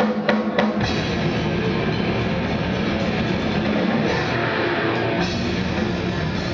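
Grindcore band playing live on drum kit and electric guitar: a few separate hits, then about a second in the full band comes in as a dense, loud, continuous wall of sound.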